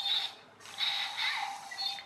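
A tiny infrared remote-control toy robot's electric motor and plastic gears whirring as it moves. The whirring starts about half a second in. It is struggling, typical of weak old batteries.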